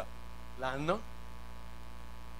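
Steady low electrical mains hum from the sound system. A short rising vocal sound from the preacher comes about half a second in.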